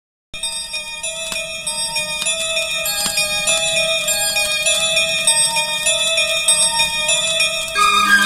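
Instrumental intro of a Hindi film song played from a vinyl LP on a turntable, starting a moment in: steady, held, bell-like notes, with a couple of faint clicks from the record.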